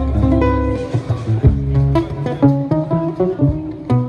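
Live band music: a guitar plays a run of short plucked single notes over low bass notes.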